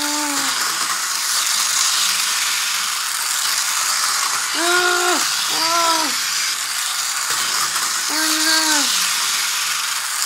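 Small electric motor and gears of a toy bullet train running with a steady buzzing whir on its plastic roller-coaster track. A child's short vocal sounds break in a few times.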